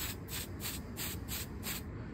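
Aerosol can of flat black lacquer spray paint hissing in short, quick bursts, about three or four a second, as a second coat goes onto the wheels.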